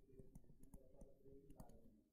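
Faint, irregular clicks and taps of a stylus on a tablet screen while a word is handwritten.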